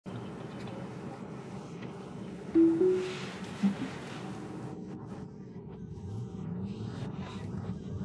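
Tesla's two-note rising chime about two and a half seconds in, typical of Full Self-Driving being engaged, followed a second later by a brief lower tone, over a low steady background.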